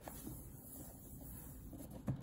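Faint handling sounds of a plastic coffee maker being tilted by hand on a cloth-covered surface: light rubbing, with a small click right at the start.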